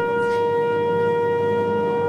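Wind instruments of a procession band holding one long, steady note.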